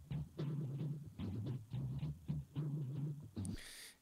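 Synth bass loop, a run of short low notes at roughly two a second, played through Logic Pro X's Phat FX plugin with its Mod FX module on the Heavy vibrato mode at a fast modulation rate.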